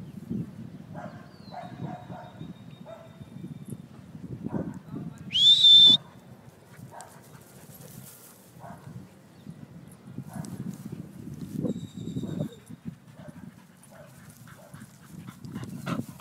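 A dog gives one short, loud, high-pitched whine about five seconds in, rising and then holding its pitch, over a low rumble of wind on the microphone.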